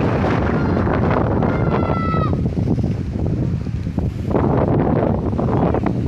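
Strong wind buffeting the microphone. A brief high-pitched call is heard about a second and a half in; it lasts under a second and drops in pitch as it ends.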